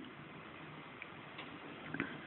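Quiet room hiss with three faint, small clicks: about a second in, shortly after, and just before the end.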